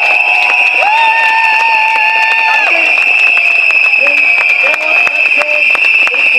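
Protest crowd blowing whistles in a continuous shrill tone, with scattered clapping and cheering. About a second in, a lower held note sounds for under two seconds.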